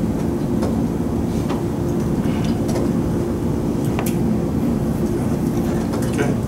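Steady low room hum, with a few faint clicks.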